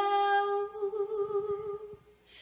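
A woman's voice singing unaccompanied, holding one long note at a steady pitch, the drawn-out end of the song's last word, with a slight waver in its second half before it fades out just before two seconds in.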